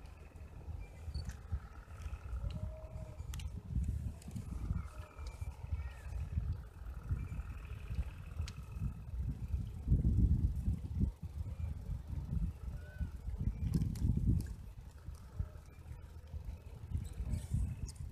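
Gusty low rumble of wind buffeting the microphone, mixed with the road noise of a bicycle riding along a paved path. It swells louder about ten seconds in and again around fourteen seconds.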